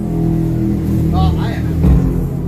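A loud, steady low drone, with a person's voice briefly calling out about a second in.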